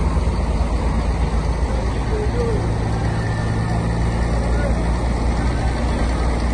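Crane truck's engine running steadily, a low drone under loud, dense noise.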